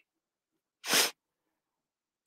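A woman sneezing once, a short sharp burst about a second in.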